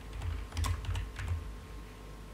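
A quick run of several clicks and soft low knocks lasting about a second, over a faint steady hum.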